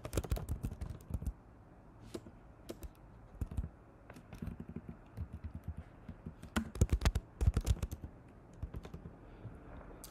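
Computer keyboard being typed on in short, irregular bursts of keystrokes with pauses between, the thickest run of keys about six and a half to eight seconds in.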